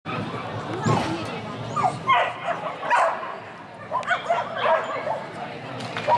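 A dog barking and yipping in short, high calls several times in a large echoing hall, over background voices.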